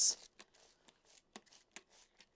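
A short hiss at the very start, then a scatter of faint, sharp clicks from a handheld plastic trigger spray bottle being worked while misting seed-starting cells.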